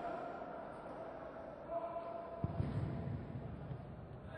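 Indoor sports hall ambience during a futsal match: distant voices and shouts echoing in the hall, with a short burst of low thuds about two and a half seconds in.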